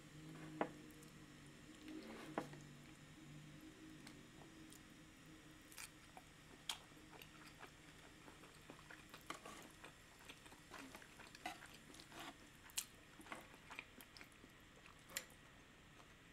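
Soft, close chewing and wet mouth sounds of someone eating chili oil wontons, with scattered light clicks of chopsticks on a metal tray. The sound is quiet throughout.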